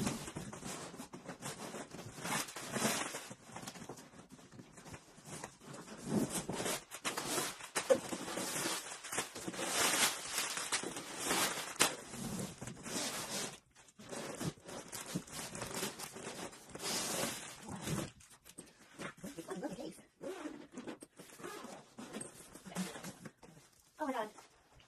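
A large cardboard shipping box being handled, scraped and tipped over, with packing paper rustling and crinkling in irregular bursts, and the zipper of a padded bass gig bag being opened.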